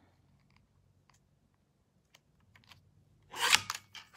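Paper trimmer cutting a strip of patterned paper: a few faint ticks of the paper and trimmer being handled, then a short, loud rasp of the blade sliding through the paper near the end.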